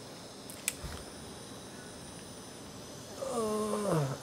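Quiet procedure-room tone with faint steady high-pitched equipment tones, broken by a single sharp click about a second in. Near the end a person's voice comes in with a drawn-out, falling word.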